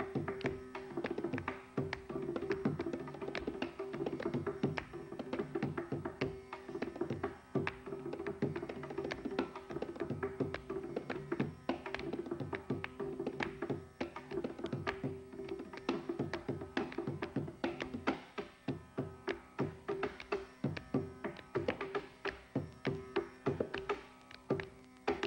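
Mridangam solo (thani avartanam): fast, dense strokes on both heads of the double-headed barrel drum, the right head ringing at a fixed pitch, with a steady drone underneath. Near the end the strokes settle into a more evenly spaced, sharply accented pattern.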